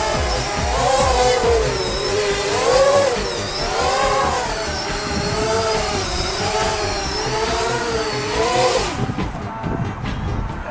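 Custom Phantom-clone quadcopter's motors and propellers whining in flight, the pitch swinging up and down every second or so as the throttle and attitude change. The whine drops away sharply near the end as the quad comes down and the motors stop.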